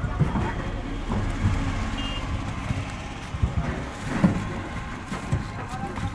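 Green coconuts being handled and tossed onto a pile, giving several dull knocks (the loudest about four seconds in), over a steady low rumble.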